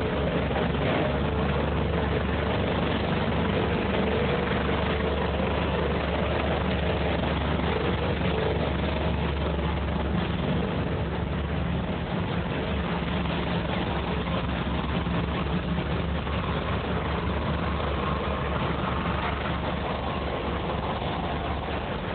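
A steady engine running at idle, with a constant low hum under an even noise, easing off slightly about halfway through.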